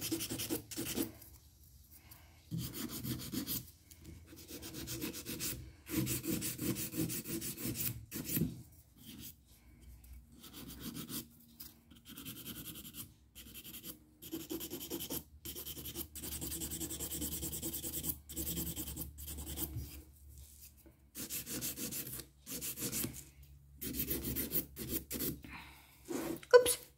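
Fine 180-grit hand nail file rasping across a cured acrylic nail, stroke after stroke in short runs with brief pauses between them, as the nail is shaped and smoothed.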